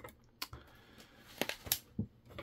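A few short, sharp clicks and taps of a paper instruction booklet being handled and lifted, two of them close together about one and a half seconds in.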